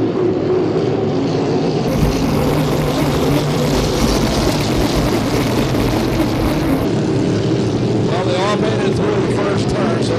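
Racing hydroplanes' V8 inboard engines running flat out together in a steady drone. From about two seconds in until about seven, the sound switches to a recording from inside one boat's cockpit, where engine, wind and spray are louder and fuller. Near the end, engine pitch rises and falls as boats pass.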